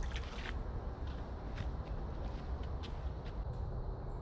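Footsteps and scuffs on a rocky creek bank, heard as a quick run of sharp clicks at the start and then irregular single clicks, over a steady low rumble.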